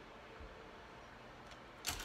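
Quiet room tone, with one short knock near the end as makeup items are handled on the desk.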